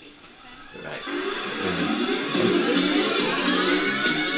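Live concert music played back on a television, coming in faintly and swelling to full volume about a second in.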